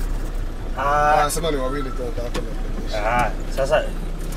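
Steady low engine and road rumble heard inside the cabin of a minibus driving slowly through town traffic.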